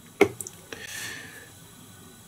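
Small handling sounds of glue being put on a fly hook's shank at the tying vise: a sharp click, a fainter tick, then a soft hiss of under a second.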